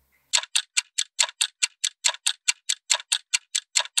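Clock ticking sound effect: fast, even ticks, about five a second, starting just after the beginning. The sped-up ticking marks time passing.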